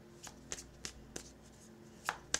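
Tarot cards being shuffled by hand: four short, faint card clicks about a third of a second apart.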